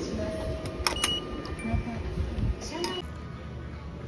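Soft background music over the hubbub of a busy indoor public space, with a few sharp clicks and short high beeps about a second in and again near three seconds.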